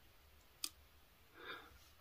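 Near silence in a small room, broken by a single short click about two-thirds of a second in and a faint breath near the end.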